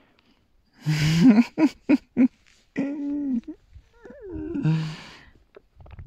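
A sheep gives several short, low calls close to the microphone while it is scratched on the head, some of them with a breathy rush.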